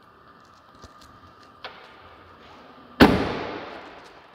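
The Jeep Wrangler's rear swing-gate is slammed shut: a faint latch click about a second and a half in, then at three seconds one loud bang that rings off over about a second.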